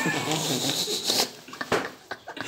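A man's loud, high-pitched, drawn-out vocal cry that fades about a second and a half in, followed by a few short sharp sounds.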